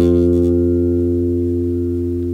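Electric bass guitar playing a single sustained note, F on the third fret of the D string, plucked once and left to ring, slowly fading.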